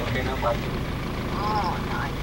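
Safari vehicle's engine running steadily, heard from inside the cabin as a low hum under brief exclamations from the passengers.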